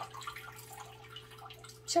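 Faint scattered ticks and taps from a potted orchid in coarse bark media being handled, over a steady low electrical hum.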